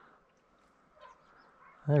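Faint, scattered calls of distant ducks and geese over a quiet marsh.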